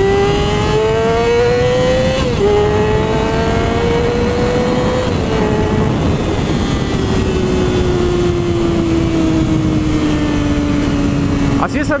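Yamaha YZF-R6's 599 cc inline-four engine accelerating hard high in its rev range, around 14,000 rpm where its power sits. The pitch climbs, drops sharply with an upshift about two seconds in, climbs again and drops with a second shift about five seconds in. The throttle then rolls off and the pitch falls steadily as the bike slows, under wind rushing over a helmet-mounted camera.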